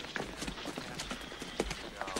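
Footsteps of several people in boots walking across packed dirt, an irregular run of steps and scuffs.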